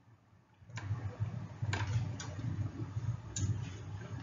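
A moment of dead silence, then a steady low hum of room and microphone noise with a few faint clicks, about one every second.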